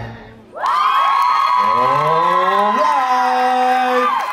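Audience cheering loudly with high-pitched shouts and long held whoops, breaking out about half a second in as the music ends; one voice glides upward in pitch in the middle.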